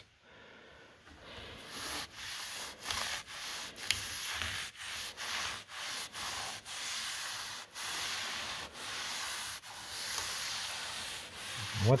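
Cloth rag rubbed back and forth over weathered American chestnut boards, wiping on tung oil. A run of short rubbing strokes, about two a second, begins about a second in.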